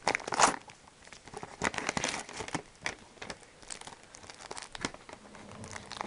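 Cardboard mailer and plastic-wrapped packs of card sleeves being handled, crinkling and rustling in irregular spurts, loudest in the first half second.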